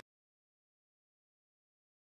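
Digital silence: the sound track cuts out completely.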